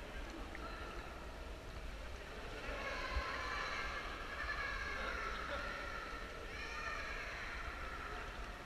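People's voices: high-pitched calls or shouts rise out of a steady background murmur from about three seconds in, with a shorter call near the end.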